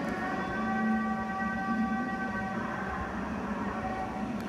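A sustained drone: a chord of steady held tones over a lower wavering tone. Most of the upper tones drop out about two and a half seconds in.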